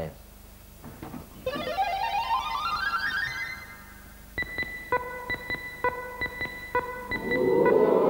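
Game-show synthesizer sound effects: a quick rising run of electronic notes, then a string of short, evenly pitched electronic beeps as the chosen letter is revealed in the puzzle.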